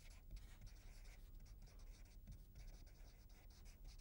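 Felt-tip marker writing on paper, faint short scratchy strokes as words are written out.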